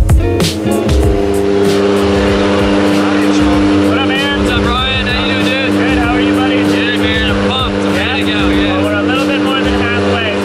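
Propeller-driven turboprop aircraft engines running with a steady drone, heard from inside the cabin. Voices rise and fall over the drone from about four seconds in.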